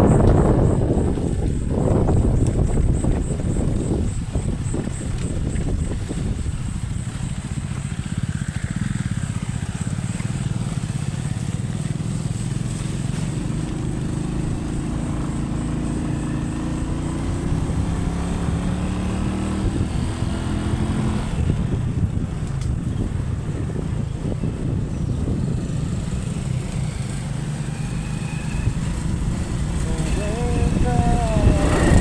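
Motorcycle engine running while riding, with wind and road noise; the engine note climbs slowly for several seconds around the middle.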